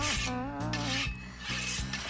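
Hand file rasping in about three back-and-forth strokes, over light background music.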